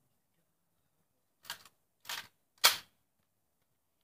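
Three short crunching steps about half a second apart, the last the loudest: footsteps through dry leaves coming up close to the microphone.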